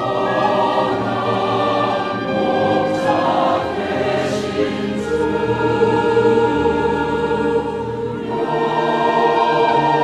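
Large mixed choir singing a Korean hymn in long held chords, accompanied by a small instrumental ensemble with violin and flute. The chord changes about five seconds in, and again after a brief dip near eight seconds.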